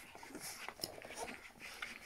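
Faint whimpers and small squeaks from 23-day-old Rhodesian Ridgeback puppies nursing at their mother.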